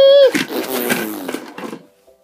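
A held high-pitched note breaks off about a quarter second in. A harsh, rough roar with falling pitch follows and dies away near the end.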